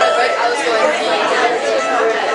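Overlapping chatter of several people talking at once in a crowded room.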